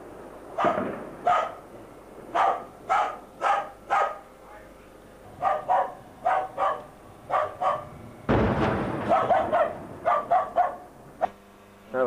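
A dog barking over and over in quick clusters, set off by artillery shelling. About eight seconds in there is a heavier, noisier burst with deep energy, and the barking runs on after it.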